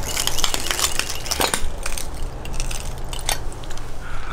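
Footsteps crunching over debris on a floor: a string of irregular crackles and clinks, with a few sharper cracks.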